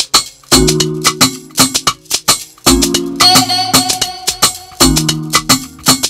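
Afrobeats beat playing back from a music production program: a busy shaker pattern over a looping chord progression, starting about half a second in, with a deep kick hit about every two seconds.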